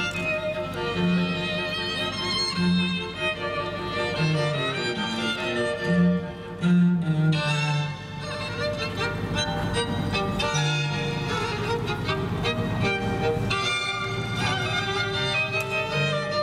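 String quartet of two violins, viola and cello playing live, with the cello sounding separate low notes beneath the upper strings.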